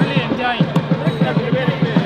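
Thavil drum struck in a fast, even run of low strokes, about seven or eight a second, with people talking over it.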